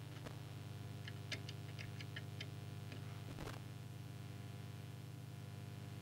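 Small clicks from hand-tuning the coils of a CB radio's transmitter: a quick run of about eight light ticks, then a single louder click, over a steady low electrical hum.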